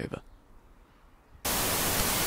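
A burst of TV-style static hiss, an even white-noise rush that cuts in suddenly about one and a half seconds in, used as an editing transition between scenes.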